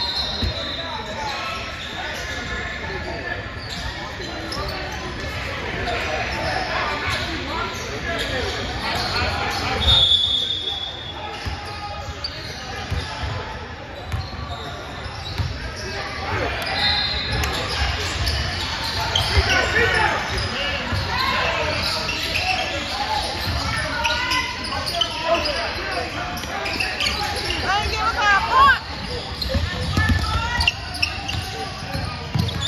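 A basketball bouncing on a hardwood gym floor during free throws and then dribbling, with players' and spectators' voices echoing in a large gym hall.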